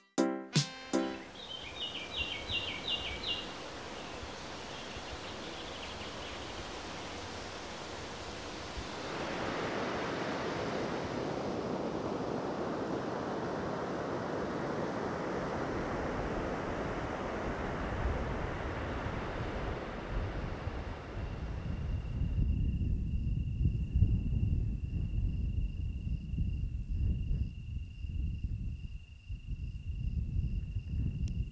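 The music stops in the first second, followed by a few short high notes. Surf washes on a beach as a steady hiss, swelling about nine seconds in. From a little past twenty seconds a cricket trills steadily at a high pitch over wind rumbling on the microphone.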